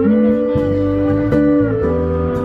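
Live amplified band music: held notes that slide up and down in pitch over a steady bass line.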